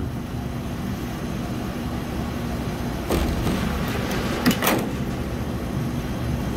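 Small tubing cutter being turned around a 3/8-inch copper tube, over a steady machinery hum; a sharp scrape about three seconds in and a couple of quick clicks about a second and a half later as the cut finishes.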